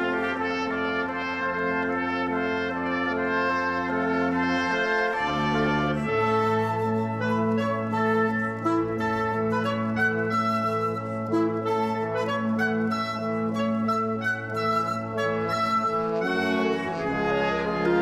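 Symphony orchestra playing, brass to the fore, over long held bass notes that change pitch about five seconds in and again near the end.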